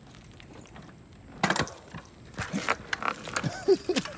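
Irregular sharp clicks and knocks from a mountain bike with a damaged chain as the rider gets on it, starting about a second and a half in. The owner thinks the chain tensioner is at fault.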